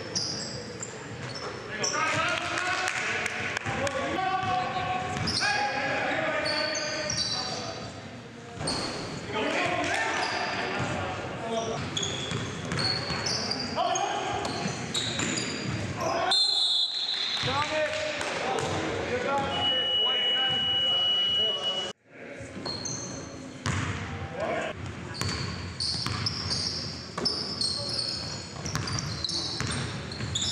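Live basketball game audio in a gymnasium: sneakers squeaking on the hardwood floor, the ball bouncing, and players' voices calling out. A steady high tone sounds for about two seconds around two-thirds of the way through.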